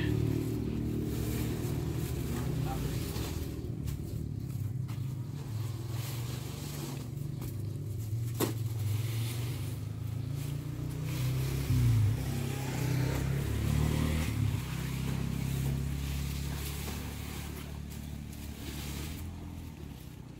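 A vehicle engine idling steadily, with a single sharp knock about eight seconds in.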